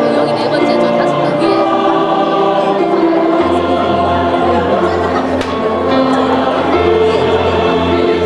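A mixed choir of men's and women's voices singing a sacred song in harmony, with sustained chords, joined by a steady low bass note about three and a half seconds in.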